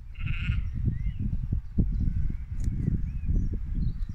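A sheep bleats once, briefly, just after the start, over a loud, uneven low rumble that runs throughout, with a few faint high chirps later on.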